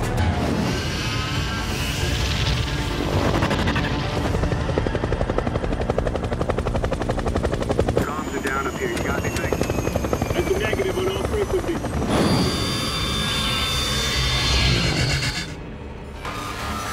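Film soundtrack mix of helicopter rotor chop under music, with brief voices. About halfway through, the sound changes sharply and falling tones sweep down for a few seconds.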